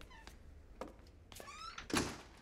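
A door swung shut with a thud near the end, the loudest sound here. Before it come two short, rising, high-pitched squeals.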